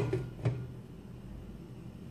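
Glass pan lid knocking against the rim of a frying pan as it is handled: a sharp knock at the start and a smaller one about half a second later, followed by a faint steady low hum.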